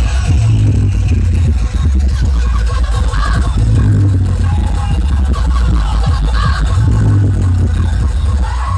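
Electronic dance music played very loud through large outdoor DJ speaker stacks, dominated by heavy sub-bass that swells in a repeating pattern about every three seconds.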